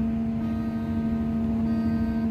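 Steady running hum of a scrap-yard material-handling machine, heard from inside its cab: a constant low drone over an even rumble.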